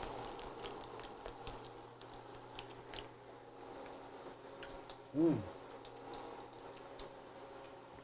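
Quiet room with a faint steady hum and a few scattered faint clicks. About five seconds in, a man gives a short appreciative "mmm" while tasting food.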